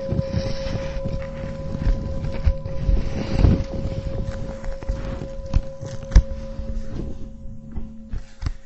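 A singing bowl rings on with one steady, slowly fading note after being struck, over rustling and low rumbling handling noise, with a couple of soft knocks past the middle.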